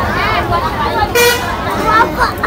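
People talking over a murmur of crowd chatter. A short, high horn toot sounds a little over a second in.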